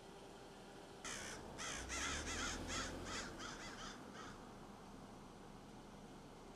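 A bird calling: a rapid run of about ten harsh, caw-like calls that come quicker toward the end and stop a little past four seconds in.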